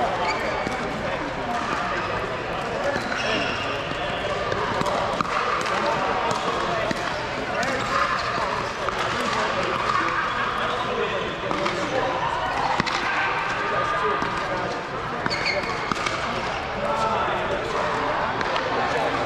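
Indistinct chatter of many voices in a large hall, with scattered sharp pops of pickleball paddles hitting balls and balls bouncing on hard courts.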